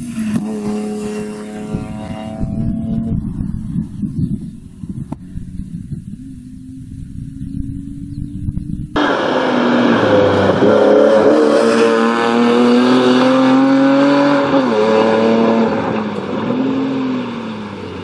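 BMW E36 320i rally car's straight-six engine at hard throttle on a rally stage, first fading as it drives off, then after a sudden cut much louder and closer, its pitch rising and dropping several times as the driver shifts gears and lifts for bends.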